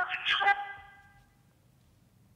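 A brief voice over a police radio recording, thin-sounding with no top end, cutting off about half a second in. Near silence with a faint low hum follows.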